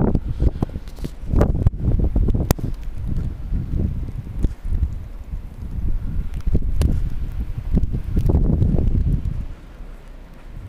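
Strong blizzard wind gusting over the camera's microphone, a loud, uneven low rumble with a few sharp clicks, easing off just before the end.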